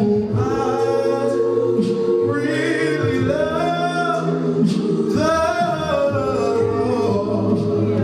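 A man singing a gospel song a cappella into a microphone, with other voices in the congregation singing held notes beneath him.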